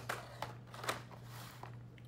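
Plastic blister packs on cardboard cards of die-cast toy cars being handled and shifted on a table: a few short crinkles and taps, the sharpest about a second in, over a steady low hum.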